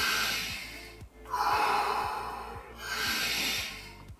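Deep, forceful breaths drawn in and let out, about two full breaths, each stroke lasting a second or so: the power-breathing phase of the Wim Hof method. Background music with a faint low beat plays under the breathing.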